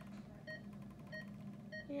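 Bedside patient monitor beeping in time with the pulse: short, identical high beeps, evenly spaced, a little under two a second.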